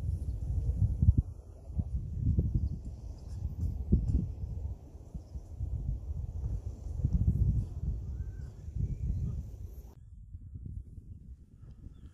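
Wind buffeting the microphone in gusts, a low rumble that swells and fades every second or two. It drops to a quieter background near the end.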